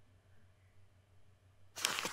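Near silence with a faint low hum, then near the end a loud rustling page-flip sound effect, a quick run of sharp papery flicks.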